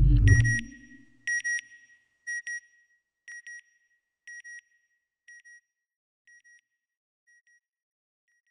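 Electronic logo sound effect: a low, whooshing boom, then double beeps at a high pitch repeating about once a second, fading away like an echo.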